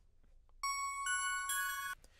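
Omnisphere 'Harmonial Pianobells 2' synth bell patch playing three bright, ringing notes one after another, starting about half a second in and cutting off suddenly near the end.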